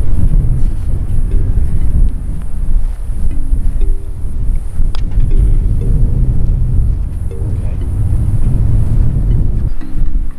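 Wind noise on the microphone, with soft background music of held chords, and a single sharp click about halfway through.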